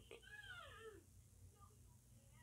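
A single faint animal cry under a second long, pitched and meow-like, rising briefly and then falling.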